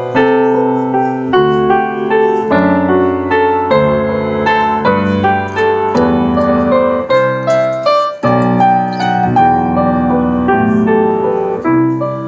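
Live instrumental music: gentle chords whose notes change about every second, with a brief break about eight seconds in.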